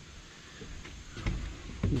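A few soft, low thuds of footsteps on a wooden porch deck, over a faint background hiss.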